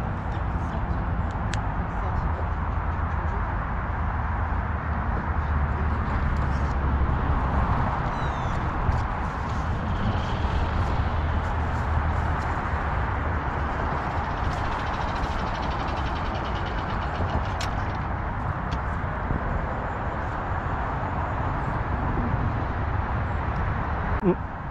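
Wind buffeting the microphone: a steady rushing rumble heaviest in the low end, with a few faint clicks.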